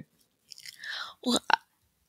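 A short pause, then faint mouth noises and a breath from a woman about to speak, followed by her saying the single word "Well."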